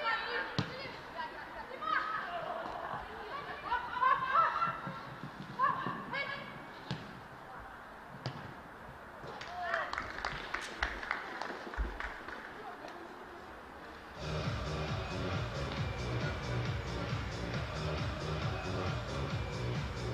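Live sound of a football match: players shouting short calls to each other, with a few sharp knocks of the ball being kicked. About fourteen seconds in, music with a steady beat comes in and runs on.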